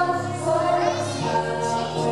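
A young woman singing a slow, held melody into a microphone, amplified over the hall's sound system, with sustained low accompaniment notes underneath.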